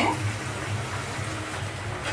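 Steady kitchen background noise: an even hiss with a low hum beneath it and no distinct knocks or clinks.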